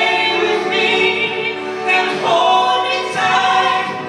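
A man and a woman singing a musical-theatre duet in long held notes over instrumental accompaniment.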